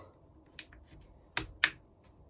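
Plastic bumper strip clicking as its grommets are pressed by hand into the holes of a squash racket frame: three short sharp clicks, a faint one about half a second in, then two louder ones close together near the end.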